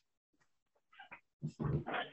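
A cat vocalizing as it is moved away from a keyboard: a few short sounds about a second in, then a louder, low drawn-out call from about a second and a half in.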